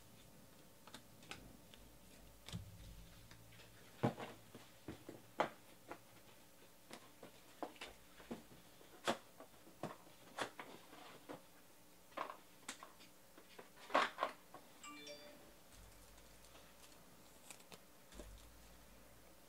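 Trading cards being handled on a table: irregular faint clicks and taps as cards are flicked through and set down, with two louder knocks about 4 and 14 seconds in. A brief pitched blip sounds about 15 seconds in.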